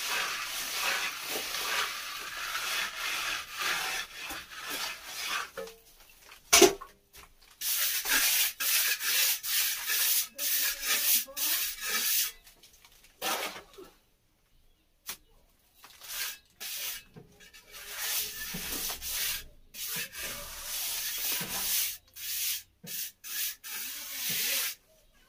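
A trowel scraping and smoothing cement plaster on a wall in repeated rubbing strokes. A single sharp knock comes about a quarter of the way in, and the strokes pause briefly just past halfway.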